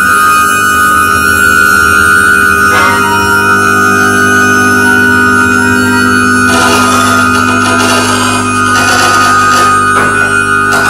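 Live electroacoustic music: a double bass processed in real time through Kyma, sounding as layered sustained drone tones, low and high, held steady. Bursts of noisy texture join the drones about seven and nine seconds in.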